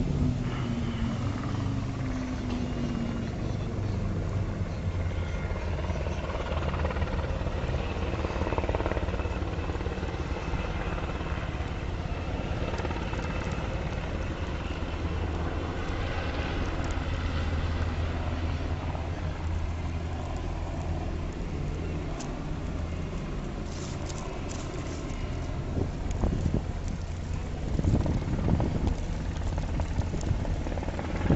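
Helicopter running with a steady low drone, and a tone falling in pitch over the first few seconds. There are a few louder rumbles near the end.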